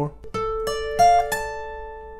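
Acoustic guitar picked one string at a time: four notes of a D minor arpeggio, about a third of a second apart, each a step higher than the last, left ringing and fading.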